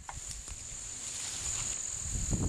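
Steady high-pitched trilling of insects, with a low rumble underneath.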